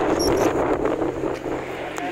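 Wind rushing over the microphone mixed with the road and engine noise of a moving motorcycle, heard from the pillion seat at speed; it eases slightly near the end.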